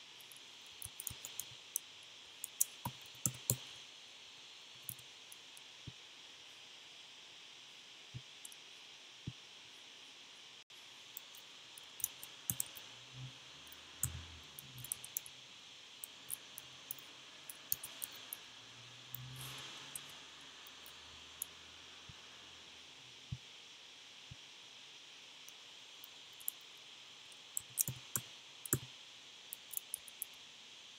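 Irregular computer keystrokes and mouse clicks, short and scattered, over a steady faint hiss.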